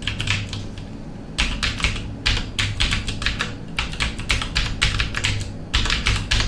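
Typing on a computer keyboard: a few scattered keystrokes, then a quick run of several a second from about a second and a half in, as a web address is typed.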